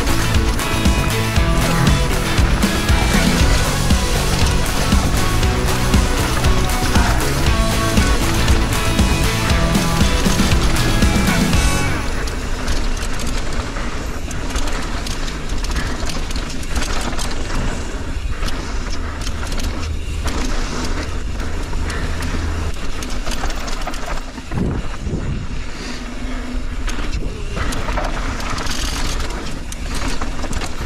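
Background music with a steady beat that stops about twelve seconds in. After it come the riding sounds of a mountain bike descending a dirt and gravel trail: tyres rolling over the ground, with knocks and rattles over bumps.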